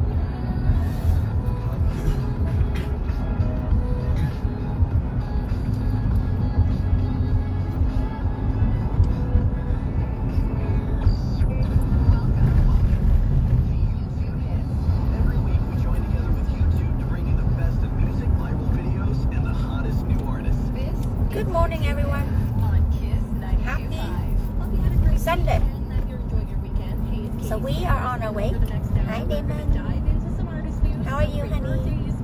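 Road noise inside a moving car, a steady low rumble, with music playing over it and voices talking in the last third.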